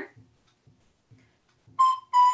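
A short quiet pause, then near the end a recorder starts a clear, high steady note: the opening of a slurred phrase.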